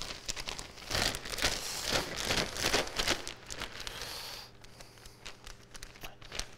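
Clear plastic mushroom grow bag, filled with sawdust-and-soy-hull substrate, crinkling in irregular bursts as it is handled and its open top is gathered up. The crackling is busiest early on and thins out after about four seconds.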